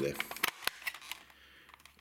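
Plastic battery-compartment cover of a Polaroid Colorpack II instant camera pressed shut, giving a few sharp clicks about half a second in, followed by faint handling noise.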